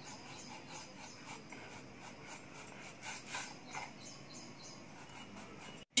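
Faint, irregular crisp cuts of a kitchen knife slicing through a raw onion onto a wooden chopping board, with a closer run of cuts about three seconds in.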